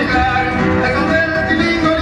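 Mexican folk music from Veracruz, with plucked strings and singing, playing steadily as dance accompaniment.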